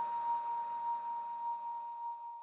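The tail of a radio station's ident sting: a single high ringing tone, held steady and slowly fading, with a faint reverberant hiss around it.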